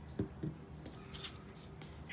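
Faint handling of crafting materials on a tabletop: two soft knocks as the small glue bottle and scissors are set down, then brief papery rustles as a paper tag and cardstock circle are picked up.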